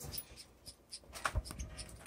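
Small cage birds moving about a wire cage: light, irregular scratching, ticks and taps of feet and claws on perches and wire, with a soft thud a little past a second in as a bird lands.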